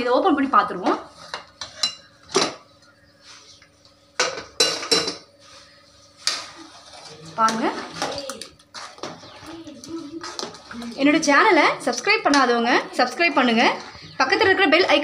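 Aluminium pressure cooker being opened: sharp metal clanks as the weight valve and lid are taken off, several in the first five seconds. Then a spoon scrapes and knocks in the pot as the curry is stirred.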